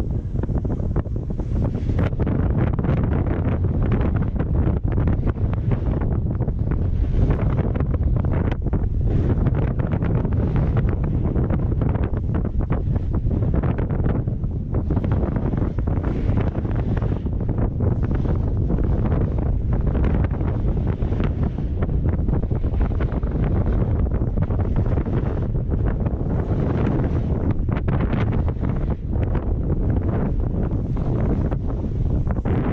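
Steady, loud wind rushing over the camera microphone on a fast downhill run on skis or a board, heaviest in the low rumble, with many brief crackles from the snow and gear throughout.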